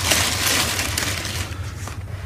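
Tissue paper rustling and crinkling as a sneaker is lifted out of its shoebox, dying down near the end.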